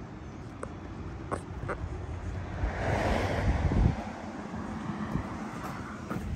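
Wind rumbling on the microphone, with a gust that swells and buffets about halfway through before easing back.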